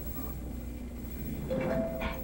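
Lhasa Apso puppy growling, louder and higher for the last half second.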